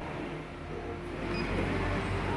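Steady low hum and rumble of building ambience, with a sharp click right at the start.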